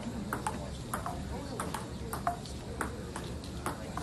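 Table tennis rally: the celluloid ball clicking off the paddles and bouncing on the table, about three hits a second in an uneven rhythm.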